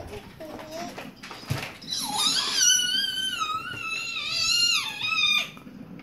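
An infant's long, high-pitched squeal, wavering in pitch for about three seconds, starting about two seconds in. A short coo and a light knock come before it.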